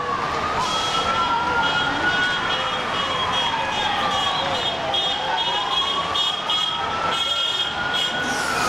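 Police siren wailing, its pitch rising and falling slowly, one full cycle taking about five to six seconds. A high, broken beeping tone sounds above it for most of the stretch, over a noisy street background.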